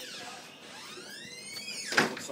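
A man's long, high-pitched wails of pain while his legs are being waxed: a cry that rises and falls in pitch over about a second and a half, ending in a sudden loud burst at the very end.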